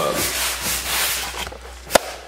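A rough, steady rubbing noise that fades away, then a single sharp click just before the end.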